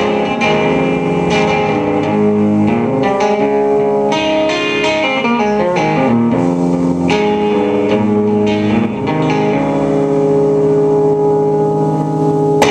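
Solo electric guitar, a Telecaster-style, played through an amplifier: sustained chords and picked notes that ring on over one another.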